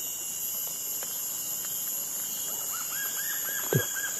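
Tropical forest ambience: a steady high-pitched insect drone throughout, and near the end a bird calling a quick run of about six arched notes.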